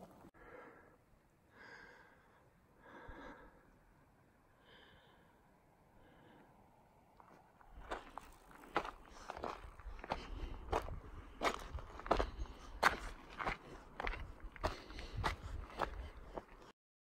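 A hiker's footsteps crunching on a gravelly, rocky mountain trail. They begin about halfway through at a steady walking pace of roughly one and a half steps a second, after a few quieter seconds with only faint soft sounds.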